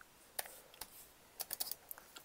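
Computer keyboard typing: a couple of separate keystrokes, then a quick run of five or six clicks in the second half.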